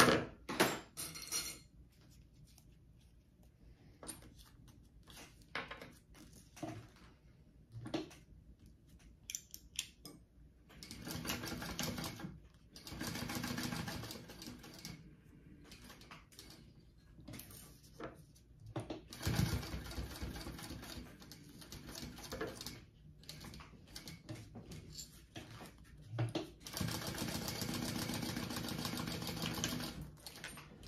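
A Kingmax GC0302 industrial sewing machine topstitching through a small vinyl-and-fabric tab. It runs in four short bursts, the longest near the end, with light clicks and taps from handling the work in the pauses between them.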